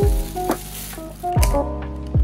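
Background music with a deep kick drum about once a second. Over it, the crinkling rustle of a thin plastic bag being pulled off a paper dessert cup.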